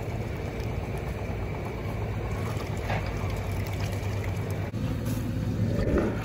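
A motor running steadily with a low hum, with faint water splashing over it.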